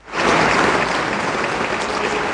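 Audience applauding, loud and steady, cutting in abruptly at the start.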